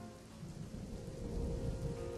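Quiet ambient background music: a few held notes fading out over a low rumble that swells a little toward the end.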